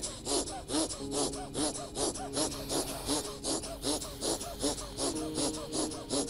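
Rapid, forceful breaths in and out through the nose, about three a second in an even rhythm: fast alternate-nostril breathing (anulom vilom pranayama).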